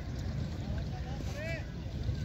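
Wind rumbling on the microphone, with faint distant voices calling out about a second in.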